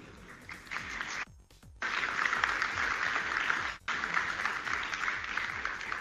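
Audience applauding: faint at first, then fuller from about two seconds in, broken by two brief dropouts in the playback.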